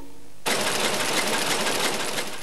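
A sung note dies away, then about half a second in the noise of a tea-bag packing machine cuts in suddenly, running with a fast, even clatter.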